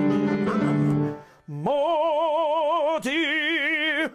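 Grand piano chords held for about a second, then a single operatic singing voice holding two long notes with wide vibrato, unaccompanied.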